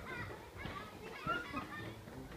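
Faint background chatter of several people's voices, children's voices among them, overlapping with no clear words.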